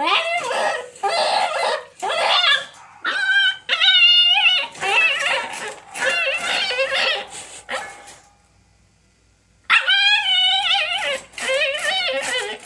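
A husky puppy whining and yipping in a run of short, high, wavering calls, with a brief pause about two-thirds of the way through before it starts up again.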